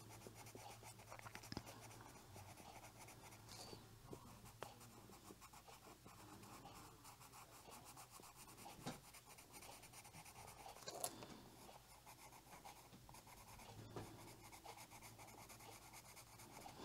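Faint scratching of a colored pencil shading on a coloring-book page, with a few light ticks of the pencil against the paper.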